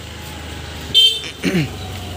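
Motorbike engine running steadily while riding, with a short horn toot about a second in.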